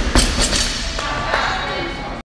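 A loaded barbell with bumper plates thudding as it bounces and settles on a rubber gym floor after a dropped deadlift: a few thuds in the first second and one more a little past the middle.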